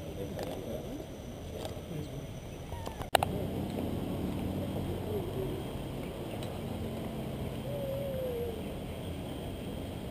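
Indistinct chatter of people talking, broken by one sharp click about three seconds in where the recording cuts, after which a steadier outdoor background noise with faint voices continues.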